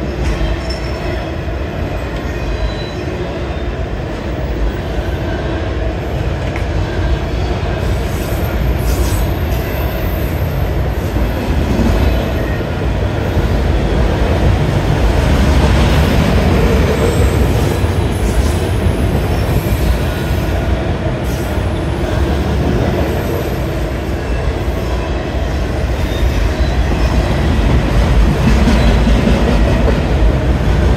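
CSX freight train of autorack cars rolling steadily past a grade crossing: a continuous loud rumble of steel wheels on rail, with some high wheel squeal through the middle.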